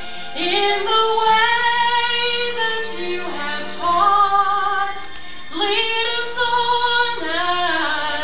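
A female voice singing long held notes, sliding between pitches, over soft instrumental accompaniment.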